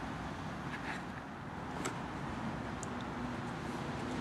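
Quiet background noise with a faint steady low hum coming in about halfway through, and a few light clicks.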